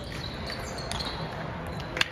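Table tennis ball clicking sharply a few times as it is struck and bounces, the loudest click near the end. Short high squeaks of sneakers on the hardwood gym floor come in the first second.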